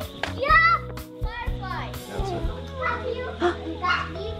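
Children's high voices calling out as they play, over background music with sustained notes.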